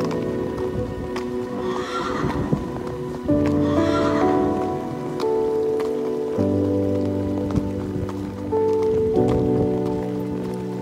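Background music of sustained, slowly changing chords. A horse whinnies twice over it, about two and four seconds in.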